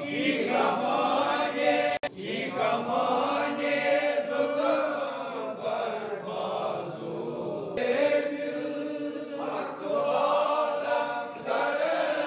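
A group of men chanting devotional verses together from prayer books, several voices on held, sung notes, with a momentary break about two seconds in.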